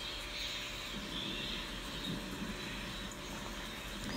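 Quiet steady background hiss with a low hum: the room tone of a home narration recording, with no distinct event.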